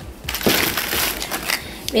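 Plastic bag crinkling and rustling, starting about half a second in and lasting over a second, as a small toy is fished out of it.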